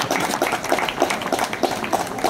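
Audience applauding: many irregular hand claps.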